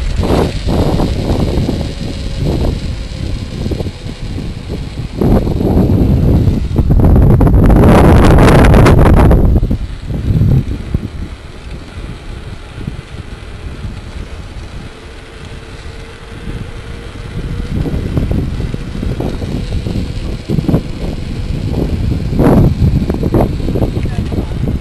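Wind buffeting the microphone of a camera on a mountain bike ridden fast, with the tyres and frame rumbling and rattling over the street. The wind rush is loudest about seven to nine seconds in, eases off in the middle and picks up again near the end.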